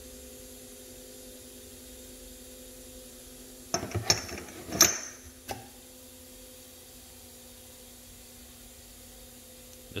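Clatter and clinks of machined aluminum parts being handled and set down in a box on a shelf, about four seconds in, with a last sharp click a second later. A steady electrical hum runs underneath.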